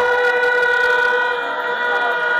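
Several steady tones held at once, an unbroken ringing drone over the public-address system, with faint voices underneath near the end.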